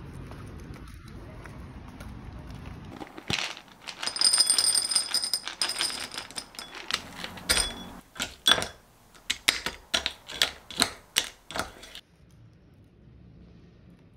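A spatula clicking and scraping against a ceramic bowl while wet pet food is mashed, in sharp taps about two to three a second. Before that comes a denser clatter of clicks with a faint high ringing.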